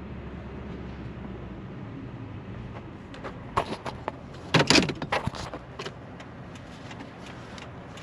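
Low rumble inside a Toyota pickup's cab that drops away about two seconds in as the truck stops. Then a cluster of sharp clicks and knocks from handling the camera and the truck's fittings, mostly between about three and a half and six seconds in.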